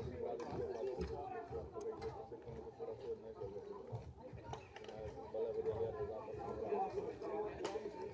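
Indistinct voices of people talking at a distance, with no words clear, and a single short click near the end.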